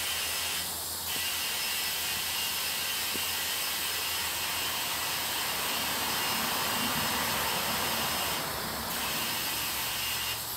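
Compressed air hissing steadily through a tire chuck on the valve stem as a freshly plugged car tire is inflated to pressure, with two brief breaks in the hiss, about a second in and near the end.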